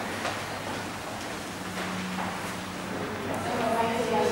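Footsteps on a hard stone floor, a few scattered sharp taps, with a faint steady low hum in the middle.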